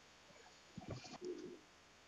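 Near silence: room tone, with a few faint soft sounds a little under a second in and a brief faint low hum-like tone just after.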